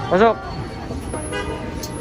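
A short voiced exclamation that rises then falls in pitch, like an 'oh!', just after the start. It is heard over steady busy-street background noise, with a brief higher pitched tone about a second and a half in.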